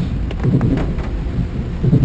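Heavy rain on a moving car's windscreen and roof, mixed with the tyres running through water on a flooded road: a steady, low rushing noise.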